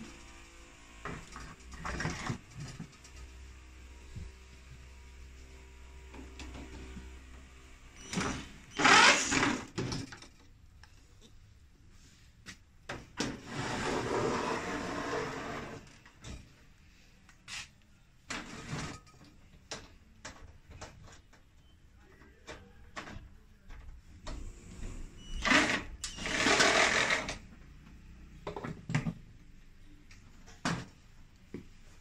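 Cordless drill-driver running in three short bursts, about a third of the way in, around the middle and near the end, as it backs screws out of a gas fan heater's sheet-metal casing. Between the bursts there are scattered clicks and knocks from the metal panels being handled.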